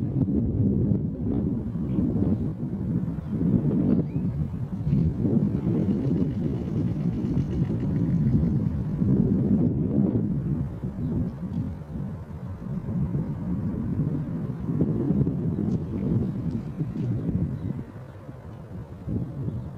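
Wind buffeting the microphone: a gusting low rumble that swells and eases.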